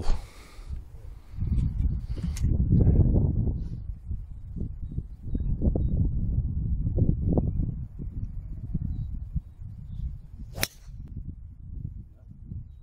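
A single sharp crack of a driver striking a golf ball off the tee, near the end, over a low, uneven rumbling background.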